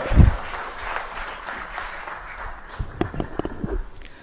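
Audience applauding, the clapping thinning out over the first few seconds, with a few low thumps near the end.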